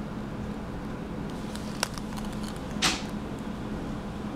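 Fingers handling a plastic lipstick case over a steady low hum, with a small click a little under two seconds in and a brief scrape or rub of skin on plastic near three seconds.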